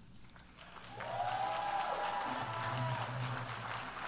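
Faint audience applause with a distant cheering voice in the hall, starting about a second in and fading out near the end.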